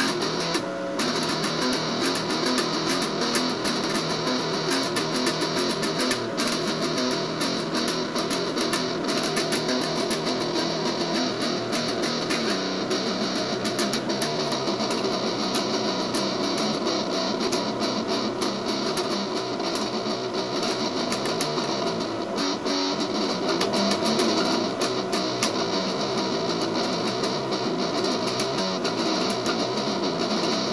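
Eastwood Sidejack electric guitar played through a BOSS MT-2 Metal Zone distortion pedal into a Vox AC15 valve amp. The playing is dense and sustained, with no pauses.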